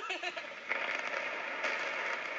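Demolition charges going off and the rumble of a 13-story building being imploded, heard through a TV speaker. A sudden wash of noise starts about two-thirds of a second in and carries on steadily.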